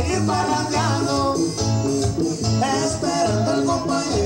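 Live band playing Latin dance music over a PA, with a steady bass beat under melodic lead lines.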